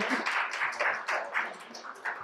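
Audience applauding, fading away toward the end.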